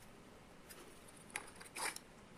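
Faint handling of thin aluminum cooling fins on a brass cylinder: a few small clicks and light scrapes in the second half as the fins are slid and pushed along.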